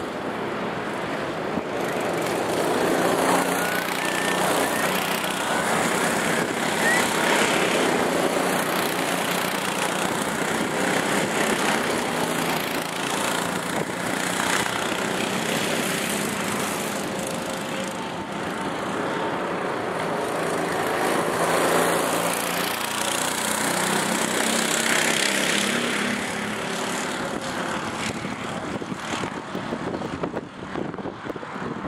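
Go-kart engines running around a circuit: several karts pass in turn, the engine note swelling louder and fading as each goes by.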